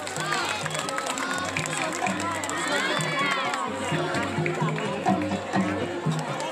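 Balinese gamelan playing a steady, evenly pulsing pattern on bronze metallophones and gongs, with people's voices rising over it about half a second in and again around the middle.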